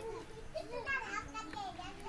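Faint, indistinct children's voices talking in the background over a steady hiss of room noise.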